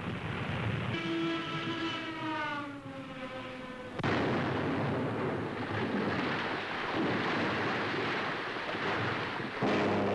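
A fighter plane diving past, its engine note falling in pitch, then a sudden loud explosion about four seconds in as a dropped auxiliary gasoline tank bursts into a fireball, its rumble lasting several seconds. Near the end another falling engine note begins.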